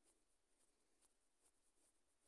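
Near silence: a pause in the voiceover with only faint hiss.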